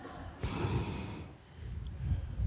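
A man's short, quiet breath into a handheld microphone, about half a second in.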